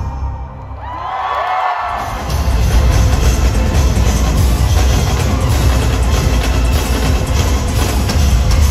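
Live concert music played loud through the PA, heavy in the bass, heard from within the crowd. It drops out just after the start, a rising and falling sweep sounds about a second in, and the music comes back loud about two seconds in.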